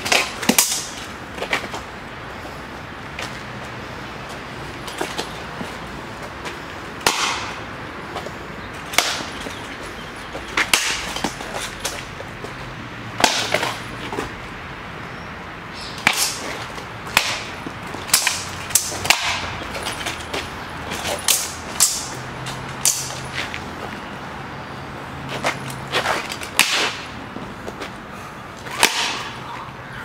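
Sabres and bucklers clashing in a sparring bout: sharp clashes and knocks come every second or few, often two or three in quick succession.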